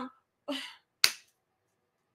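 A short, faint vocal sound, then a single sharp click about a second in, like a finger snap or a click of the tongue.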